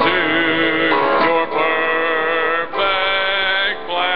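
Singing of a slow worship song over music, in long held notes.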